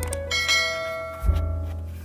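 Instrumental background music with a sustained bass note that changes about a second in, and bell-like chiming notes near the start.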